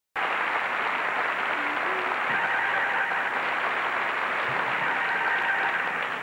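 Live studio audience applauding, a dense, steady clapping that cuts in abruptly at the start and begins to die away at the very end.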